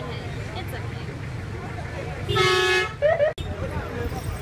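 A vehicle horn sounds one steady blast of about half a second, midway through, over the continuous low rumble of a vehicle driving along a busy street.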